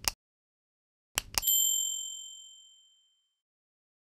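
Subscribe-button animation sound effects: a quick double mouse-click at the start and another about a second later. The second pair runs straight into a bright notification-bell ding that rings out and fades over nearly two seconds.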